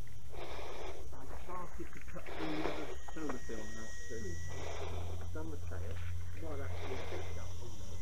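Faint voices talking in the background. A thin, steady high whine comes in about three seconds in, over a low steady hum.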